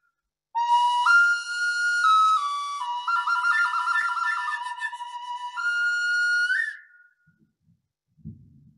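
Small hand-held flute playing a short melody: a few held notes stepping up and down, a fast trill between two notes in the middle, and a last high note that bends up slightly and stops.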